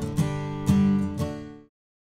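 Background music of strummed acoustic guitar, three strums, fading and cutting off shortly before the end.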